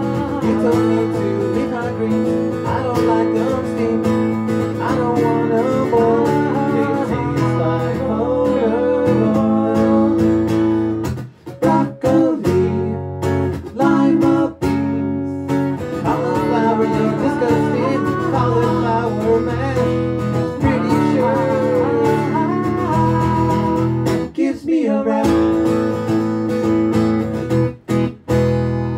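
A live children's song: acoustic guitar strummed with a man singing over it. The music drops out for a moment twice, about eleven seconds in and again near the end.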